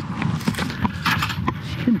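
Metal manhole lifting keys clinking and clicking as they are handled and fitted into the key holes of a concrete manhole cover, several sharp metallic clicks, over a steady low engine hum.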